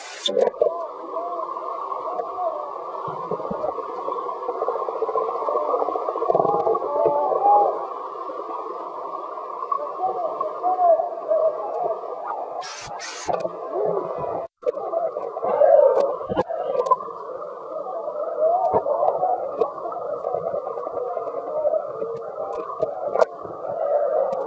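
Underwater sound in a swimming pool, picked up by a submerged camera microphone: a dull, muffled wash with wavering, voice-like tones running through it. A few clicks and a brief drop-out come about halfway through.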